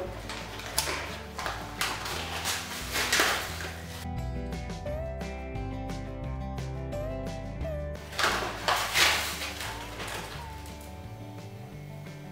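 Background music with a steady beat. Over it come bursts of paper-bag rustling and spoon scraping as sugar is scooped into a mug, during the first few seconds and again about eight to nine seconds in.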